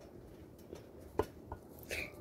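A chicken moving inside the stainless steel drum of a front-loading washing machine: a few faint, sharp taps from its beak or feet on the metal, about half a second apart.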